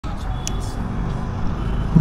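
Steady outdoor street background: traffic hum with faint voices mixed in, and a single sharp click about half a second in.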